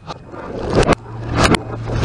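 A car tyre rolls over and crushes cans, which burst with two sharp loud cracks less than a second apart, over a rising spraying rush and the car's low engine hum.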